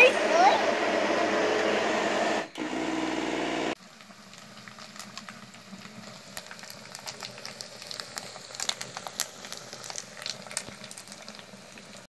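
A child's high voice calling 'oi' over a steady noise, then a short hum; after a cut about four seconds in, firewood crackling in the firebox of a wood-burning stove, with scattered sharp pops.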